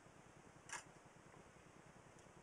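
Near silence: room tone, with a single short click about three-quarters of a second in.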